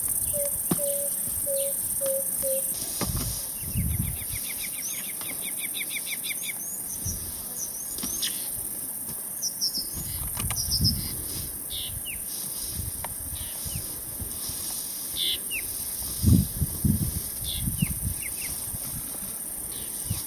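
Wild birds calling over a steady high insect hiss. A slow series of low hooting notes, falling slightly in pitch, ends a couple of seconds in. It is followed by a fast run of rising chirps and then scattered whistled notes, with a few dull low thumps now and then.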